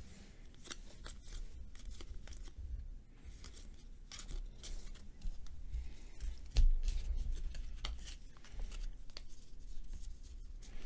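Trading cards being handled and flipped through by hand: faint, scattered sliding and flicking of card stock, with one soft bump about two-thirds of the way through.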